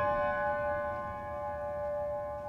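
A piano chord held and slowly dying away, several steady notes ringing together.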